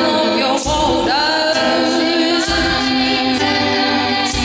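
Women's voices singing together in harmony, accompanied by acoustic guitar and ukulele, with low guitar notes recurring every second or two.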